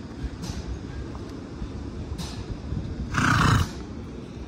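A short, loud noise from a Shetland pony, about half a second long, about three seconds in, over a low background rumble.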